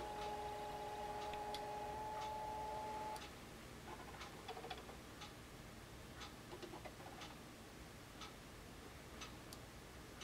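Fusion splicer's internal motors driving the two fibre ends into position for an arc calibration: a steady whine for about three seconds, then faint irregular ticks as the fibres are aligned.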